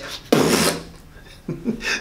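A man's breathy puff made with the mouth, a short rush of blown air lasting about half a second, imitating a pufferfish blowing itself up. Brief voice sounds follow near the end.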